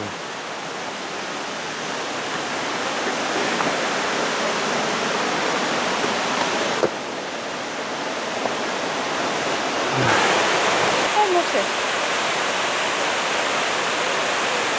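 Steady rush of water cascading down the Cataract Falls waterfalls, growing gradually louder and stronger from about ten seconds in.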